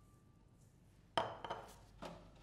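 Kitchen utensils being handled on a countertop: a sudden sharp clack about a second in that fades out, followed by a few lighter knocks.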